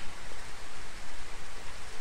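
A steady, even hiss of background noise.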